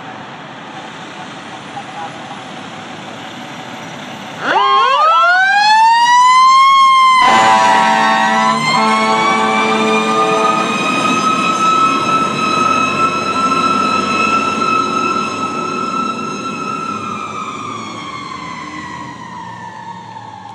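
Fire truck siren, a Federal Signal PowerCall, winding up sharply about four and a half seconds in, holding a long wail, then slowly winding down near the end. Air horn blasts sound over it for a few seconds a little before the middle.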